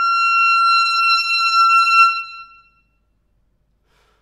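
Solo clarinet holding a long, loud high note at the top of a quick upward run. The note stops a little over two seconds in and rings away briefly.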